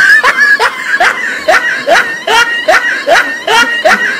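A man's voice giving rapid, repeated short cries, about three or four a second, each rising in pitch.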